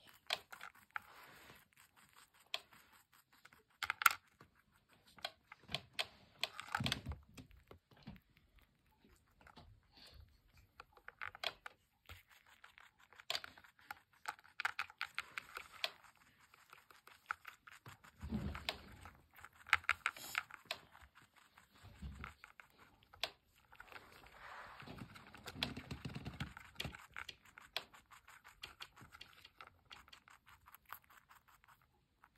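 A rabbit chewing and crunching small pieces of food in rapid trains of fine clicking bites, with a few dull bumps now and then as it noses its food dish.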